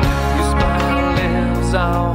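Yamaha Revstar RS720BX electric guitar playing an instrumental song over a backing track with bass and drums, the guitar bending notes in a melodic lead line.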